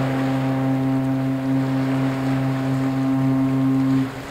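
A ship's horn sounding one long, steady, deep blast that cuts off near the end.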